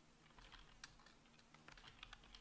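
Faint computer keyboard typing: a string of irregular key clicks as a short terminal command is typed.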